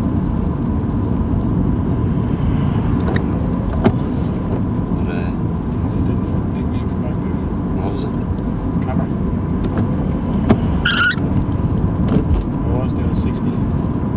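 Steady engine and road noise heard from inside the cabin of a moving car, with a few faint clicks and a brief high-pitched sound about eleven seconds in.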